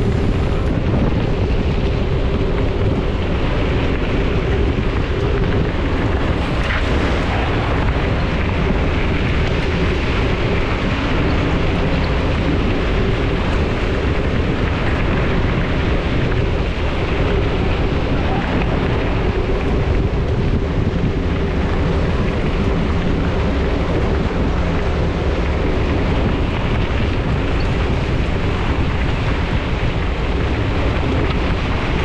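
Wind buffeting the microphone on a moving mountain bike, with knobby tyres rolling on a gravel forest road: a loud, steady rumble.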